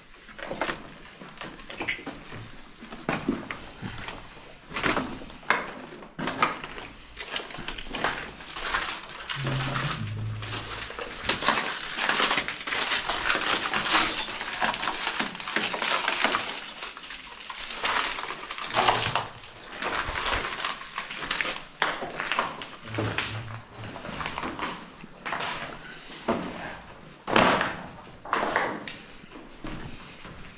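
Footsteps crunching and scraping over loose rubble and broken debris, with irregular clinks and crackles. The crunching thickens into a denser rustle in the middle, and there are a few sharper snaps later on.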